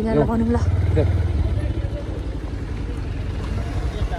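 Motorcycle engine running under way, heard from on the bike: a steady low rumble that is loudest about a second in. A voice speaks briefly at the start.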